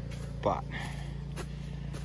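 Cement mixer working as a gold trommel, its motor and drum running with a steady low hum while loaded with dirt. It is overloaded and 'not happy', not liking how much dirt is in it.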